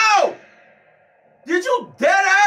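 A loud, drawn-out vocal exclamation that rises and then falls in pitch and dies away about half a second in. After a brief lull, another voice starts near the end.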